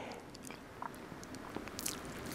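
Faint mouth clicks and lip smacks from a man pausing between sentences, picked up close by a lapel microphone, with a short hiss near the end.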